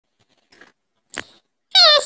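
A woman's voice made squeaky by a helium-style pitch-shifting voice app: a short, very high vocal sound that starts near the end and slides slightly down in pitch. A brief click comes about a second in.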